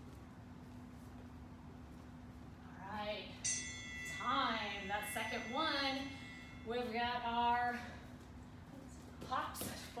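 A workout interval timer's bell-like chime rings out about three and a half seconds in and fades over a couple of seconds, signalling the change to the next exercise. Around it a woman talks, over a low steady hum.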